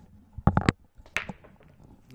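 Pool break shot in 8-ball: the cue ball smashes into the racked balls with a quick cluster of three sharp, loud cracks about half a second in. A single sharper clack with a brief ring follows a little after a second as the scattered balls collide.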